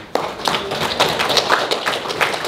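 A group of people applauding, many irregular hand claps that start abruptly just after the start.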